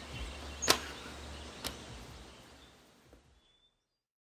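Two sharp clicks about a second apart over a faint background hiss that fades out to silence.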